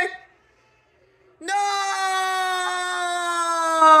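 A man's long, anguished wail of dismay, held for nearly three seconds. Its pitch sags slowly, then drops away sharply at the end. It follows about a second of silence.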